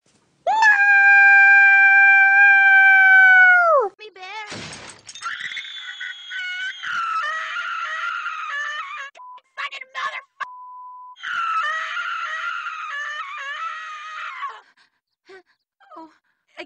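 A cartoon character's loud, high-pitched scream held for about three seconds, its pitch dropping as it ends, followed by a short crash. Then a high, squeaky cartoon voice cries and whimpers over several seconds, broken by a brief steady beep near the middle, as a pink bear with its foot caught in a trap.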